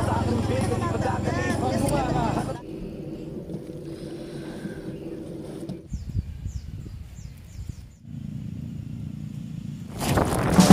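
Outdoor voices talking over a steady low engine hum for the first couple of seconds. Then quieter open-air background with the hum still low, and a few faint, short, falling high chirps a little past the middle.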